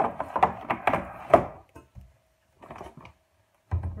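Rustling and crinkling of a woven plastic reusable shopping bag as hands rummage through the groceries inside, with small knocks of packaging, busiest for about the first second and a half. A few quieter rustles follow, then a dull thump near the end.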